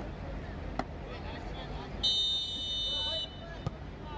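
Referee's whistle blown for kick-off: one steady, high-pitched blast of a little over a second, starting about halfway through, over faint open-field background noise.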